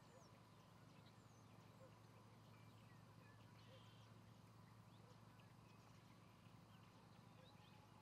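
Near silence: faint, scattered short chirps of distant small birds over a low steady hum.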